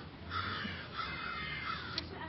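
A bird calling several times in short, repeated calls, over a steady low hum.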